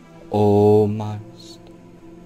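A man's voice drawing out one long, steady-pitched syllable in a slow hypnotic delivery, over soft meditation music with steady drone tones.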